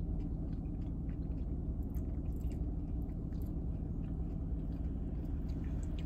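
A person chewing a mouthful of strawberry pretzel pie cookie, with small faint crunches from the pretzel pieces, over a steady low hum inside a car.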